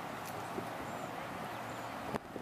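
Steady outdoor background noise by a city street, with a few faint clicks.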